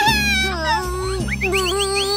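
Cartoon background music with high-pitched gliding cartoon sounds over it, ending in a quick run of four short rising chirps.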